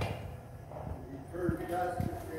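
Background voices of people talking inside a tram cabin, over a low steady hum, with a sharp click at the start and a short thump about halfway through.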